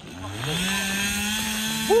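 Two-stroke chainsaw revving up to full throttle about half a second in, then running steadily at high revs, while felled tree trunks are being cut up. A short shout of 'woo' near the end.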